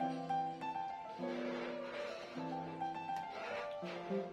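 Instrumental background music: a slow melody of held notes on a keyboard-like instrument, changing about every half second.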